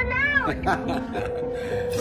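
A small child's high-pitched voice: one rising-and-falling squeal in the first half-second, then a shorter sound a little later. It plays over background music holding a steady note.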